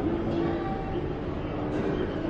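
Steady background rumble and hubbub of a large indoor public space, with a few faint steady tones running through it.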